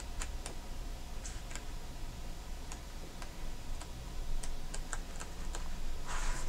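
Scattered light clicks and taps at irregular intervals, over a low steady hum.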